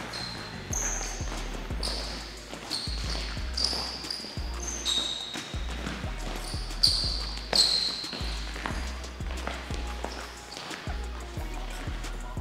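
Basketball sneakers squeaking sharply again and again on a hardwood gym floor, with footfalls, as two players shuffle and cut side to side in a defensive mirror drill. Background music with a deep bass runs underneath.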